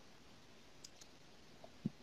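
Near silence with two faint, short clicks a little under a second in, and a soft low tap just before the voice returns.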